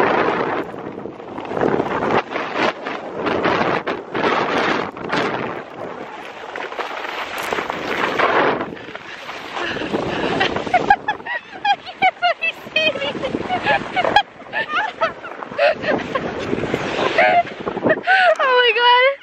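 Sled rushing down a snowy slope: rough, gusty rushing of snow and wind buffeting the microphone, with snow spraying over it, loudest in the first half. From about halfway on, a woman's laughing, gasping cries come in over softer sliding noise as the sled slows.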